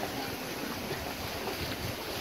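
Steady rush of wind and sea waves washing against rocky cliffs, with wind buffeting the microphone.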